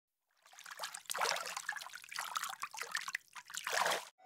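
Water trickling and splashing unevenly, starting about half a second in.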